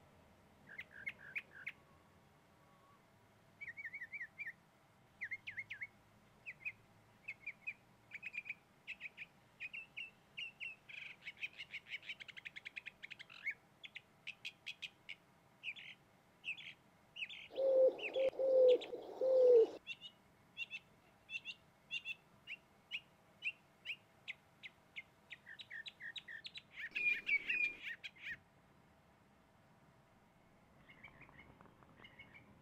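Small birds chirping, short calls repeated in quick runs throughout. About eighteen seconds in, a greater roadrunner gives four loud, low coos in a row.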